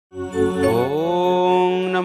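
A man chanting a Sanskrit mantra, opening on one long held note that glides up in pitch in the first second and then holds steady.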